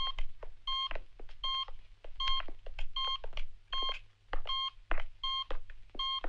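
Hospital patient monitor beeping steadily: a short, high beep about every three-quarters of a second. Soft footsteps fall between the beeps.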